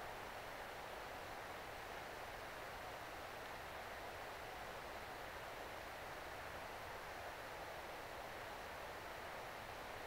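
Steady, even outdoor hiss with no distinct sounds in it.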